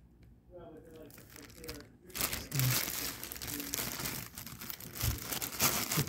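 Clear plastic wrap crinkling around a compression driver as it is handled, from about two seconds in, with a low thump near the end as the driver is set down on a wooden desk.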